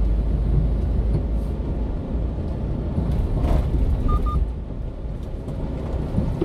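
Steady low rumble of a 1-ton refrigerated box truck's engine and tyres, heard from inside the cab while driving. A short double beep sounds about four seconds in.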